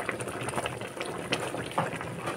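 Pot of chicken soup boiling, with a steady crackle of small popping bubbles, as a slotted spatula stirs through the broth.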